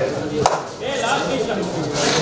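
Men's voices in a large hall during a kabaddi raid, with one sharp knock about half a second in.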